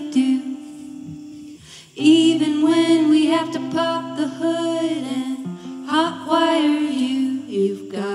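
Live band playing: electric and acoustic guitars with singing. The first two seconds are a quieter held guitar sound, then the voices come back in over the guitars.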